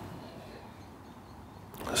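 A quiet pause: faint, steady outdoor background noise with no distinct sound events.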